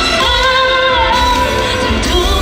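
K-pop song performed on a TV music show, with a female voice singing a wavering line over a full backing track with heavy bass.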